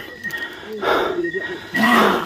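A rough, breathy growl-like hiss about a second in, with a second, shorter one near the end: a fierce creature-like growl.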